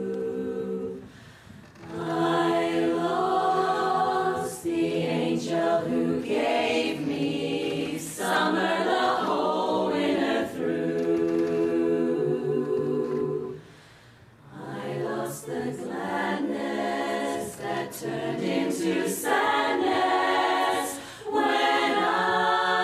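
Women's barbershop chorus singing a cappella in close four-part harmony, holding sustained chords with two brief breaks between phrases, about a second in and again about fourteen seconds in.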